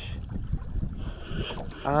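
Low, steady rumble of wind on the microphone and water around a small boat, with a brief faint hiss about a second in.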